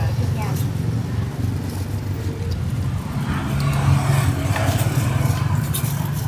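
Steady low rumble of street traffic with motorbikes passing, under faint background voices and scattered light clicks.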